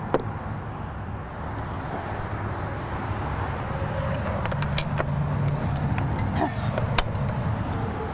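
A motor vehicle running nearby: a low steady rumble that grows a little louder toward the middle. A few light clicks and knocks come from the latch and door of an aluminium horse trailer's rear tack compartment as it is opened.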